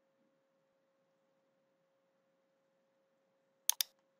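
Near silence with a very faint steady tone, then two quick sharp clicks near the end: a computer mouse being clicked to advance a slide.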